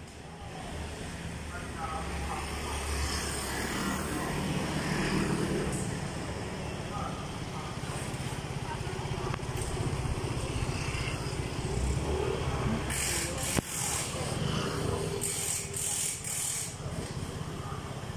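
Street traffic: a car driving past close by about midway, then motor scooters going by, over a steady hum of engines and tyres, with people's voices.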